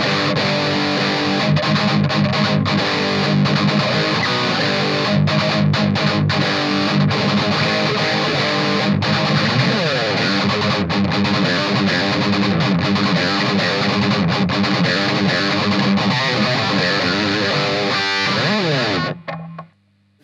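High-gain distorted electric guitar playing a metal riff through a Peavey 6505 amp head and guitar cabinet, heard through a Shure SM57 and a Sennheiser MD421 blended together on the speaker. The riff stops abruptly about a second before the end.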